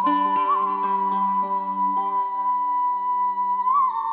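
A woman singing one long, high, held note with a slight waver near the end, over slow plucked-string accompaniment.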